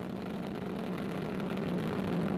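Ariane 5 rocket climbing under the thrust of its two solid rocket boosters and main engine: a steady, deep noise that grows slowly louder.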